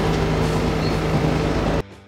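Fishing boat's engine running steadily with a low hum, under wind and water noise. It cuts off suddenly near the end.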